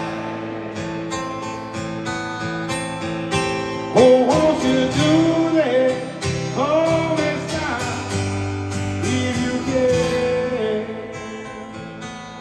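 Live band playing a slow instrumental passage of a rock ballad, with acoustic guitar over sustained chords. About four seconds in the music swells and a lead melody bends up and down in pitch.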